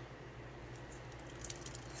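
Faint sound of water wrung from a rain-soaked sock dripping into a stainless steel sink, a few small drips about one and a half seconds in, over a steady low hum.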